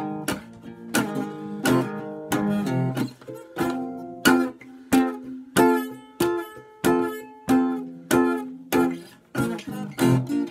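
Gretsch Jim Dandy acoustic flat-top guitar strummed solo, chords struck in a steady rhythm of about three strums every two seconds, each left to ring.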